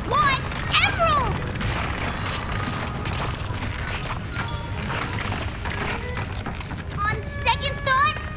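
Cartoon background score with a steady low rumble beneath it. Short wordless vocal exclamations come about a second in and again near the end.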